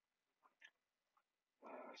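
Near silence: room tone, with two faint short sounds about half a second in and a faint noise rising just before speech resumes.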